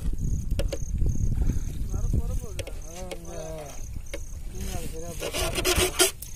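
A wet fishing net being hauled in over the side of a boat, with a low rumbling noise of water and handling. A louder burst of rustling and splashing builds up near the end.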